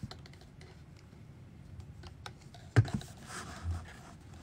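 Scattered light clicks and taps of handling, then one sharp knock about three seconds in as a plastic drink cup with a straw is put down.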